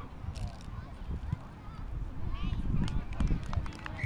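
Faint, distant voices of players and spectators calling across an open rugby field, over a low, uneven rumble of wind on the microphone.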